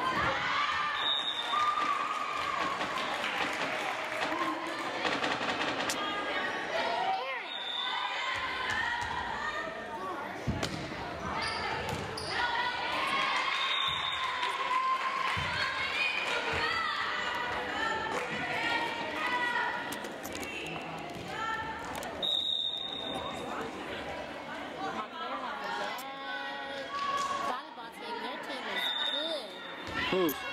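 Volleyball match in a gymnasium: the ball being hit and bouncing on the hardwood floor in scattered sharp thuds, over steady chatter from spectators and players.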